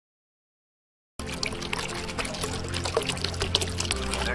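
Silence, then about a second in music starts with steady low notes, over water trickling and splashing.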